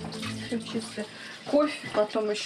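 Running water, a steady hiss like a tap left on, with a woman's voice starting near the end.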